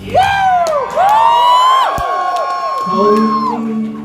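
Concert audience whooping and cheering during a break in a live rock song, several voices rising and falling in pitch at once, one held whoop fading out. About three seconds in, the band comes back in with a sustained chord.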